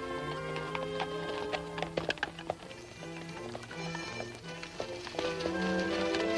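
Orchestral film score playing, with the clip-clop of several horses' hooves on a dirt trail scattered over it.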